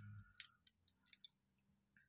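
Near silence with a few faint, short clicks of plastic parts on a Transformers Unite Warriors Bonecrusher figure being handled and pressed together.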